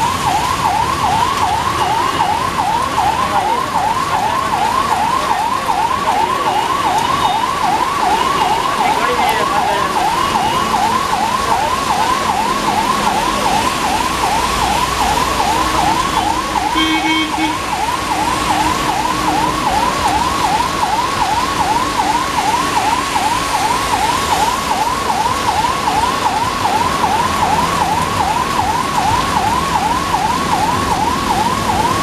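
An electronic siren warbling rapidly up and down, about two and a half sweeps a second, steady in pitch and loudness throughout, over the hiss of heavy rain.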